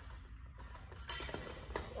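Steel fencing blades clashing: one sharp clink about a second in that rings on briefly, then a lighter tick of blade on blade near the end.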